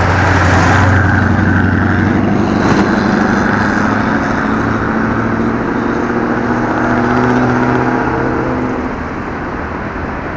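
Road traffic: a pickup truck's engine passes close by, loudest in the first second or two, then the steady hum of vehicle engines carries on and eases off near the end.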